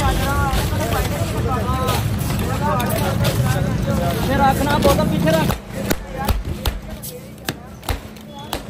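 Busy street-stall bustle: several voices talking over a low traffic rumble, which cut off suddenly after about five and a half seconds. Then a run of sharp clicks and knocks follows: ice and plastic cups being handled on a steel counter.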